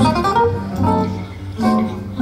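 Acoustic guitar playing plucked notes over a held low bass note.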